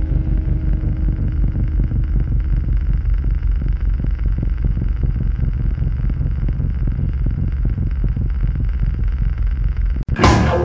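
A loud, low, dense rumble with a fast flutter and no clear musical notes, heard in an album's audio between songs; it cuts off suddenly at the very end.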